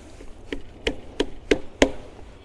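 Five light, evenly spaced knocks, about three a second, as the Comet P40 pump's plastic collector assembly is tapped and pressed by hand to seat it on the pump head.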